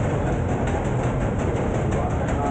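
Tourist shuttle bus driving along, heard from aboard: a steady, noisy engine and road rumble.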